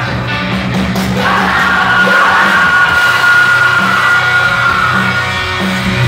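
Punk rock band playing live, loud, with a long held high note over the band from about a second in until about five seconds.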